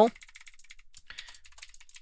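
Typing on a computer keyboard: a quick, fairly quiet run of key clicks.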